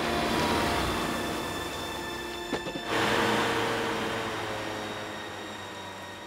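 A loud rushing, rumbling sound effect from an animated soundtrack, with steady held notes of the score underneath; it swells suddenly about three seconds in, then gradually fades.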